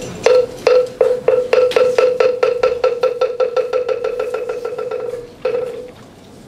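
Moktak (Korean wooden fish) struck in a roll. The hollow wooden knocks start slow and quicken into a fast run that fades, then after a short pause comes one last single stroke. This is the signal for the assembly to bow at the opening of the service.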